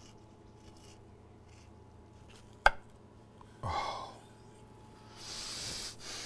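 Chef's knife cutting through a baked pie's flaky top crust. There is a sharp crack a little under three seconds in, then a crunchy scraping rasp near the end as the blade draws through to the edge. A short breathy sound comes in between.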